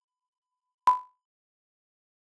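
A single short beep with a click at its onset, about a second in: the sync pop of a broadcast tape leader, sounding between the colour bars and the start of the programme.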